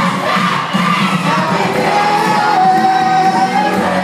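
Amplified live pop music with singing into a microphone, and a crowd of young fans singing and shouting along. A long sung note is held through much of the second half.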